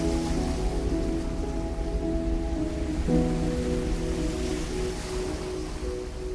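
Slow ambient background music of sustained chords, changing chord about halfway through, over a steady rushing hiss of a nature ambience track.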